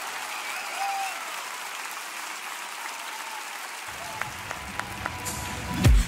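Studio audience applauding, with a few faint shouts. About four seconds in, the backing music of the next song starts, with a loud hit just before the end.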